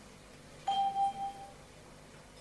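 Electronic chime from the council chamber's voting system: a single steady tone just under a second long, about two-thirds of a second in, marking the close of a vote.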